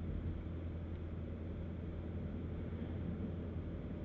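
Steady low drone of a Mini Cooper S with a turbocharged 2.0-litre engine cruising, its engine and road noise heard from inside the cabin.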